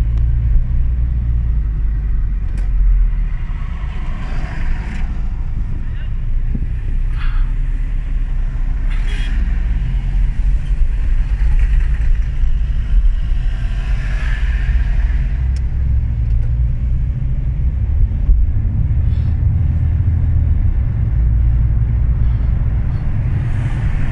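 Car driving along a paved highway, heard from inside the cabin: a steady low rumble of engine and tyre road noise, with a few brief swells of hiss.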